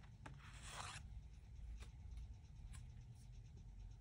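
Near silence with faint rustling of handled paper note cards and a few light clicks.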